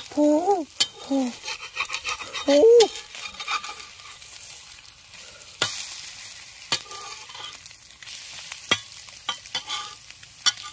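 Eggs sizzling on a hot stone slab while a metal blade stirs them, scraping and clicking against the stone. In the first three seconds a voice gives a few short rising hums, the loudest sounds here.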